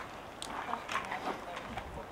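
Faint clicks and rustling from hands handling a bike helmet's chin strap and a pair of cycling gloves.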